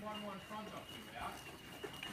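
A faint, indistinct voice talking, over a thin steady high tone.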